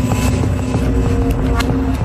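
Dark documentary underscore: a low rumbling drone with long held notes and a few faint ticks.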